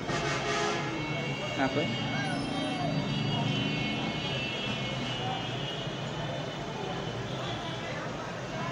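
Indistinct voices over a steady mechanical hum.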